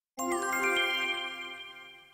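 A short chime jingle: a quick cluster of bright bell-like notes starting a moment in, which ring on together and fade away over about two seconds.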